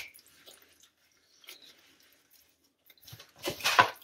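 Smoked pork shoulder being pulled apart by gloved hands in a foil pan: soft, wet squishing and tearing of the meat. It stays faint for most of the stretch, with a louder cluster of short squelches about three and a half seconds in.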